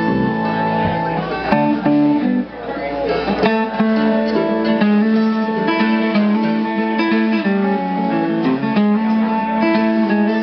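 Live band playing: strummed acoustic guitar with a second guitar and drums, the sound dropping away briefly about two and a half seconds in. The tune is in a key that the singer soon calls the wrong one.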